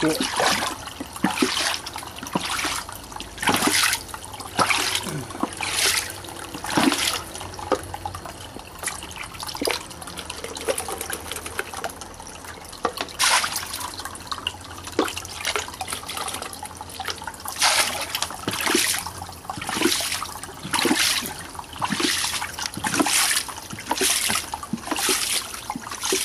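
Water in a fish tank splashing and sloshing in repeated irregular bursts, roughly one a second, as it is stirred close to the microphone.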